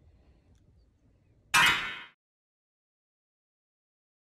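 Faint room tone, then about one and a half seconds in a single sudden loud hissing crash-like hit, an added editing sound effect, that fades within about half a second and cuts to dead silence.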